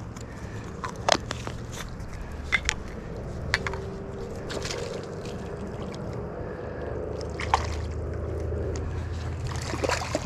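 Quiet riverbank background: a low steady rumble with a few sharp clicks and taps scattered through it.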